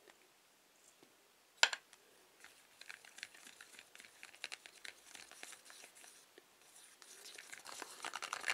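A thin stick stirring glue and thermochromic pigment in a small plastic cup: one sharp tap about a second and a half in, then a long run of faint, quick clicks and scrapes against the cup as the mix is stirred.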